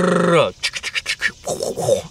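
A man making a mouth sound effect to imitate a jig trailer's kicking action. It starts as a held voiced note that drops off, followed by a quick run of hissing, clicking mouth noises.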